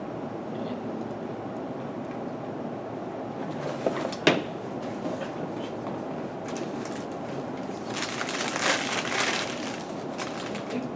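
Steady room hum with one sharp click about four seconds in and a brief scratchy noise near the end.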